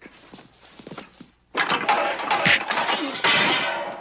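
A fight in an office: light knocks and scuffling, then about a second and a half in a sudden loud struggle. A man's strained vocal cry or groan sounds over crashing noise as he is slammed against a desk.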